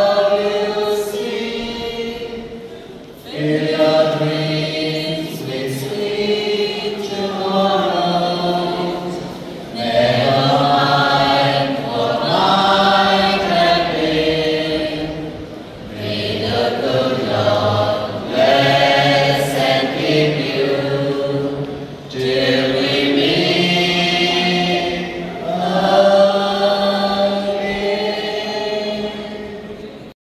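A mixed choir of men and women singing a slow farewell song together into microphones, in long held phrases of about six seconds with short breaks for breath between them. The singing cuts off at the end.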